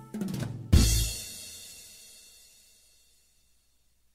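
Korg PA600 arranger keyboard's drum part ending a jazz piece: a quick drum fill, then a final bass drum and cymbal crash just under a second in, ringing out and fading over about two seconds.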